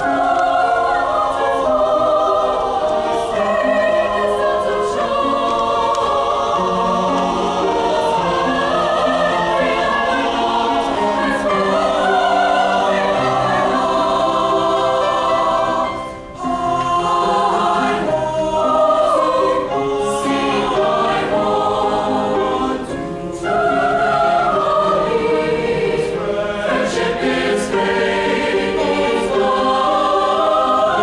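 Large mixed choir singing in full harmony, with a short break about halfway through and another brief one about seven seconds later.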